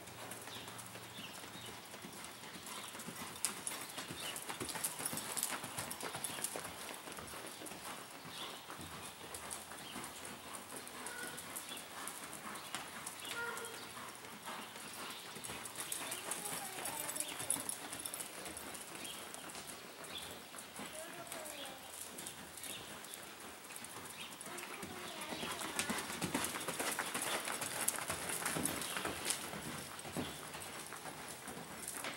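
A palomino gelding's hoofbeats as it lopes on soft arena dirt, with the hooves scuffing and sliding through the dirt in a stop about halfway through.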